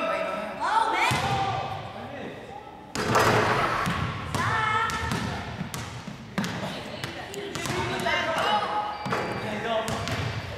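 Basketballs bouncing on a hardwood gym floor as players dribble, a string of irregular thuds ringing in the large hall, over voices and shouts from the kids around the court.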